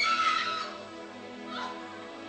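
A person's high-pitched, drawn-out wail that dies away within the first second, over soft, sustained background music.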